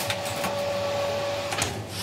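A kitchen appliance running with a steady whine that cuts off about one and a half seconds in, followed by a click.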